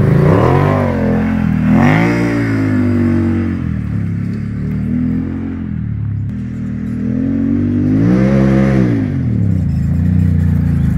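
Can-Am Maverick 1000 side-by-side's V-twin engine revving as it pulls away under throttle, the pitch rising and falling in several swells. There are strong climbs near the start and again about eight seconds in.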